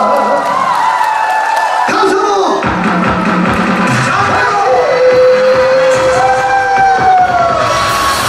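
A man singing a Korean trot song into a microphone over instrumental backing, holding long wavering notes.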